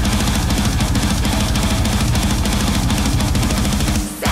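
Heavy metal song playing: distorted guitars over a fast, steady kick-drum pattern.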